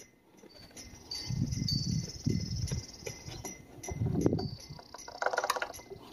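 Motor oil glugging from a plastic quart bottle down a flexible funnel into the mower engine's oil filler, in a longer spell about a second in and a shorter one near four seconds.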